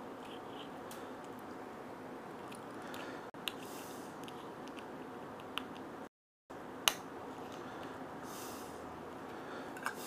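Steady low workshop room hiss with a few small sharp clicks of hand tools being handled and set down; the sound cuts out briefly about six seconds in.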